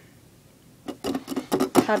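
A quiet pause, then from about a second in a run of short sharp clicks and taps, with brief hesitant voice sounds as a girl starts speaking again near the end.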